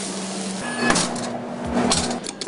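Commercial kitchen sound at a flat-top grill: a steady hiss under a low hum, with two sharp metal clacks of a spatula on the griddle, one about a second in and one near the end.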